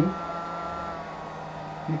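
Hair dryer fan motor running at a speed set by Arduino PWM through a MOSFET: a steady whine over a low hum, a little noisy. The whine weakens slightly about halfway through.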